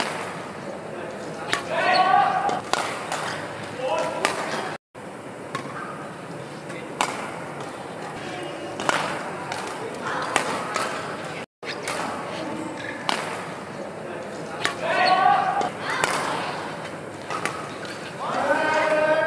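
Badminton rackets striking a shuttlecock, sharp hits every second or so in a large hall, with short voice calls now and then.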